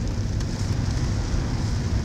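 Steady engine and road noise heard from inside a moving car's cabin, a low rumble with tyre hiss from the wet road.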